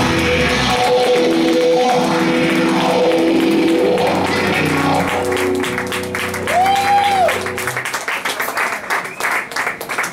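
Live band's electric guitars holding the last sustained notes of a rock song, with drums, ringing out and stopping about eight seconds in, followed by audience applause.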